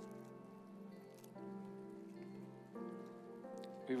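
Soft background music from a church band: sustained chords held under the prayer, changing a few times.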